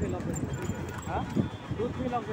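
Voices talking over the running vehicle's road noise, with a horse's hooves clip-clopping on the asphalt as a horse-drawn cart passes close by.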